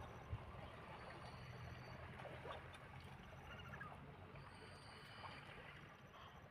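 Near silence: faint outdoor ambience with a low steady hum and a soft, even hiss.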